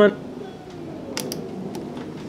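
Two sharp clicks close together a little over a second in, with a fainter one near the end: the push-button output switch on a regulated DC bench power supply being switched on to light the valve filaments.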